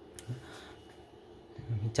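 A quiet workbench with light handling noise and a faint click as wire leads are picked up. A man's voice starts near the end.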